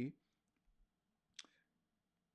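Near silence after a spoken word ends, broken by a single short click about one and a half seconds in.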